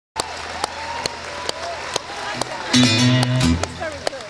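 Electro-acoustic guitar through the PA struck once past the middle, the chord ringing for under a second as the loudest sound. Before it, sharp ticks about twice a second run under wavering crowd voices.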